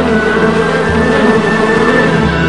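Soundtrack music from an animated short, with several sustained held notes over a steady low rumble.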